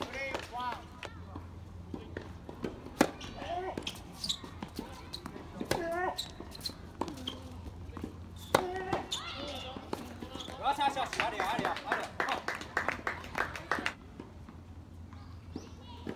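Voices chattering around an outdoor tennis court, with sharp pops of a tennis ball being struck by rackets and bouncing on the hard court, the loudest hits about three seconds and eight and a half seconds in.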